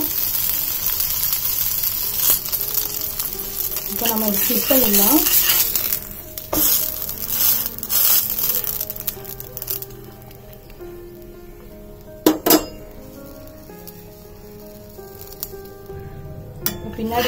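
A vegetable sandwich sizzling in fat on an iron tawa, loud for about the first six seconds and then quieter. A few sharp clicks of a metal spatula against the pan come in the second half, the strongest about twelve seconds in.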